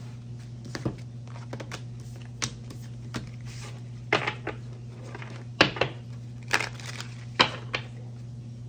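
Oracle cards being gathered up and handled on a wooden desktop: a string of short sharp taps and card rattles, about six of them, the loudest in the second half. A steady low hum runs underneath.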